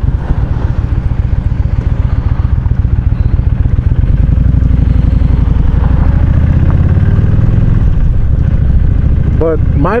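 Kawasaki Vulcan cruiser motorcycle engine running at low revs, then rising in pitch through the middle as the bike accelerates, and easing back to a steady run near the end.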